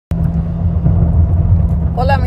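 Steady low rumble of a moving car heard from inside the cabin: road and engine noise while driving. It cuts in abruptly with a click at the very start.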